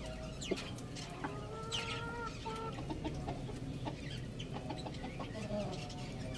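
Chickens calling: one drawn-out call of about a second starting just after a second in, then a run of short clucks.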